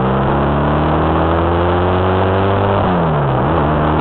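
Honda Rebel 250 parallel-twin motorcycle engine pulling under way, its pitch rising slowly, then dropping about three seconds in and holding steady, with wind noise on the microphone.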